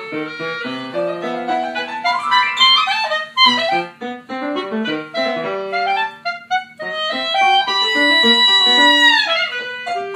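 Clarinet and grand piano playing a duo piece: quick clarinet runs, one climbing about two seconds in, over piano chords, then a long held high clarinet note that bends downward near the end.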